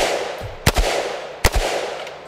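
Galil ACE 32 rifle in 7.62×39 fired in semi-automatic single shots, three reports about three-quarters of a second apart, each ringing out briefly after the crack.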